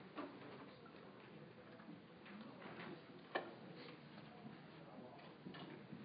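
Near silence: quiet room tone with a few faint, short clicks, the sharpest a little past halfway.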